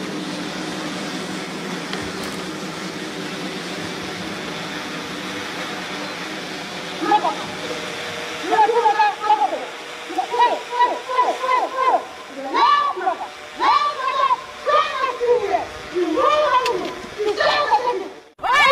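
A steady hiss for about the first seven seconds, then a person's voice calling out loudly in drawn-out phrases that rise and fall in pitch until the end.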